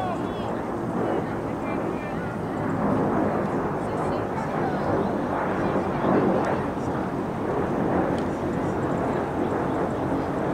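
Outdoor ambience at a soccer field: a steady rushing noise that swells a little a few seconds in, with faint distant voices.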